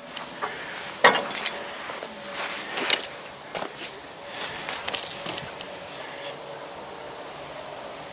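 Scattered clicks and scuffs, most in the first five or six seconds, over a faint steady hum.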